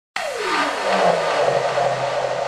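Synthesized intro sound effect: a noisy whoosh that starts suddenly with a falling sweep, over a low steady drone.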